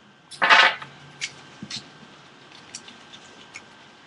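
A stack of trading cards being handled on a glass-topped table: a short swish about half a second in as the stack is gathered up, then a few faint clicks as the cards are thumbed through.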